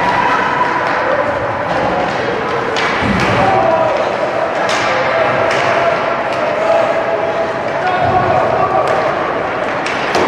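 Ice hockey rink sound: spectators' voices calling and talking, broken several times by sharp knocks and thuds of sticks and puck against the ice and boards.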